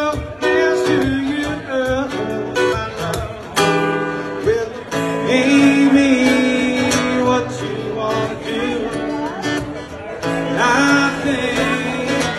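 Live band music with guitar to the fore, playing an instrumental passage with no sung words.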